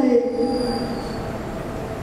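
A single held pitched note that fades away over about a second and a half.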